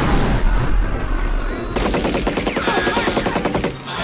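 Film soundtrack: a building blowing up, a rumbling blast of explosions. About a second and a half in, it gives way to a rapid, even burst of automatic gunfire lasting about two seconds.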